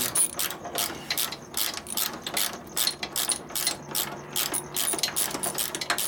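Hand ratchet wrench clicking in quick runs as loosened nuts and bolts on a Sportster ironhead's top end are backed off.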